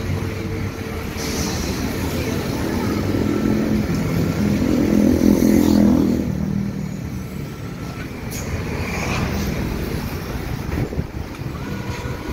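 110-volt electric winch hoist on a drum loader running under load, lifting a 55-gallon drum filled with scrap metal: a steady motor hum that is loudest about five seconds in and changes about eight seconds in.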